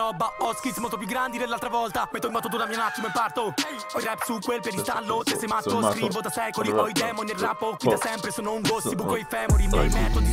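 Italian hip hop track: a male rapper raps rapidly in Italian over the beat. Deep bass comes in just before the end.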